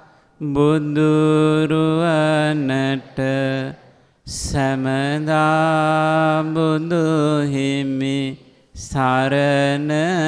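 A single male voice chanting Buddhist Pali verses in long, drawn-out notes that waver slowly in pitch. The chant breaks twice for an audible intake of breath, about four seconds in and again near nine seconds.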